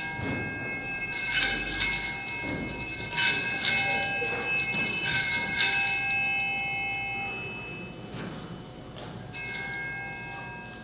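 Altar bells (a set of small Sanctus bells) rung in a series of shakes and left to fade out over about seven seconds, then shaken once more, briefly, near the end. They mark the consecration of the host at Mass.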